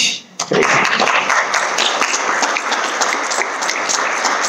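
Audience applauding, starting about half a second in and keeping up a steady clatter of many hands.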